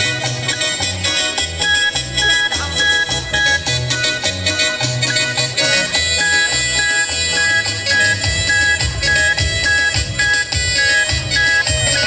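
Chilena mixteca dance music: a band with electronic keyboard, guitar and bass playing a steady, regular beat. The sound grows fuller about halfway through.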